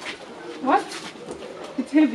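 A woman's wordless vocal sounds: a short rising hum about two-thirds of a second in, then a wavering "mm-hmm" near the end, made with effort while she heaves a heavy drum of fodder.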